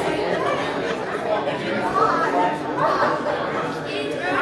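Indistinct chatter of several people talking at once in a large hall, no single voice clear.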